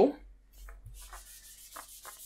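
Soft, steady scratchy rubbing of something moved over a surface, starting about half a second in, with a few faint light knocks and a low hum underneath.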